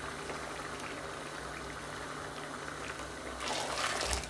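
Rice in hot water, butter and oil boiling hard in a pot, a steady bubbling. Near the end a bowl of hot water is poured in, a louder gush of liquid.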